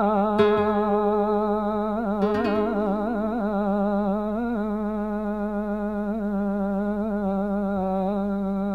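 Male flamenco singer holding one long, wavering, melismatic sung line in a malagueña, over flamenco guitar that plucks a few notes near the start and about two seconds in.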